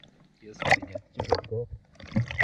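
Lake water lapping and sloshing around a person sitting in it, close to the microphone, under a few short spoken words.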